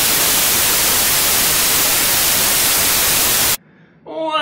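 Loud, steady television static hiss that cuts off abruptly about three and a half seconds in.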